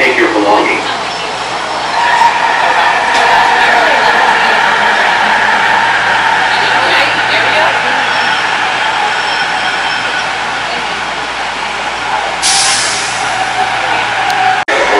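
An AirTrain JFK car running, its electric drive giving a steady two-note whine over the rumble of the ride. Near the end comes a short burst of hiss.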